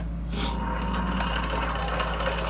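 A close, scratchy rubbing noise with many small clicks, starting about a third of a second in, like something being handled near the microphone. A steady low electrical hum runs underneath.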